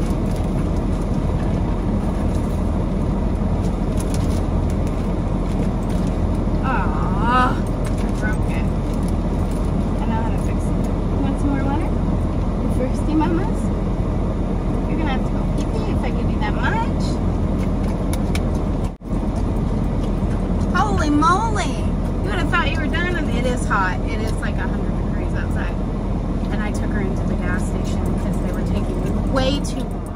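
Steady low rumble and hiss inside a vehicle cabin with the engine running.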